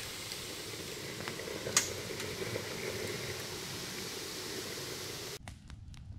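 Steady hiss of steam forcing its way out of the vent opening in a mason jar on top of an ammo-box water tank: the copper coil's water is boiling, and because the hot-water inlet sits above the water line, steam rather than liquid water is reaching the tank. One sharp click about two seconds in; the hiss drops away abruptly shortly before the end.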